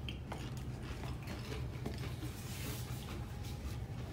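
A Pringles potato chip being bitten and chewed, heard as a few faint crunches over a steady low room hum.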